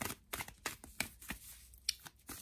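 A deck of tarot cards being shuffled by hand: a run of irregular card flicks, several a second.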